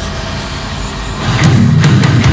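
Melodic doom metal song at a transition: a dense, rumbling swell without clear notes, then a little past halfway the full band comes in loud with heavy distorted guitar chords and drums.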